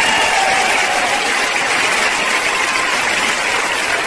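Audience applauding steadily for several seconds.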